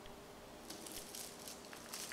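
Faint crinkling and rustling of a mylar space blanket as a multimeter probe is moved across and pressed onto the film, a few soft crackles through the middle.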